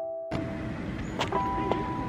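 Background keyboard music ends about a third of a second in. It gives way to outdoor ambience: a steady low rumble of road traffic, a few sharp clicks, and a steady high tone lasting about a second in the second half.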